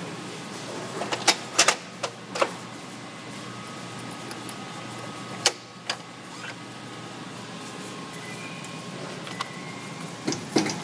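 Metal crimp dies knocking and clacking as they are handled and set down: a cluster of sharp clacks between about one and two and a half seconds in, and two more near the middle, over a steady low hum.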